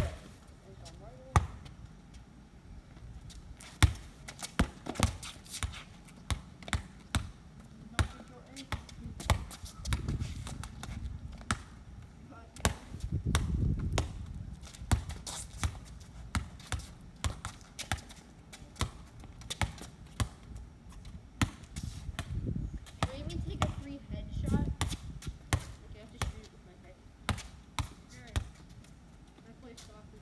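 A ball being dribbled on a concrete driveway in a game of one-on-one: sharp, irregular bounces, often one or two a second, with the odd louder slap.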